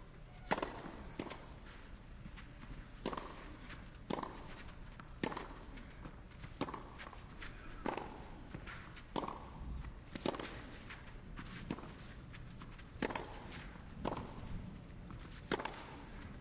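Tennis rally: a serve about half a second in, then a long exchange of racquet strikes on the ball, around a dozen hits roughly one every second, over a quiet crowd.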